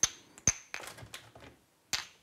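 Glass jars and kitchenware clinking and knocking as they are set onto kitchen cabinet shelves: two sharp clinks with a brief high ring about half a second apart, a few lighter knocks, and another sharp clink near the end.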